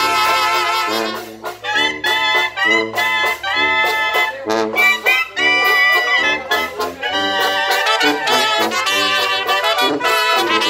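A small brass band of trumpets, trombones, clarinets and a sousaphone playing a tune. The notes come short and separated for the first several seconds, then run on more smoothly near the end.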